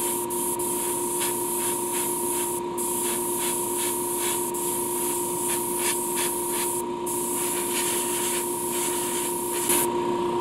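Airbrush spraying candy paint, a steady hiss of air and paint that cuts out briefly twice, about a third of the way in and again near two thirds, over a steady hum.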